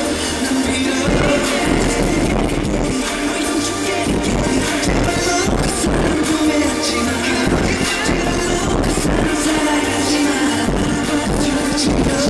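Loud live pop song with a heavy, steady bass beat, recorded from the audience at a stage performance.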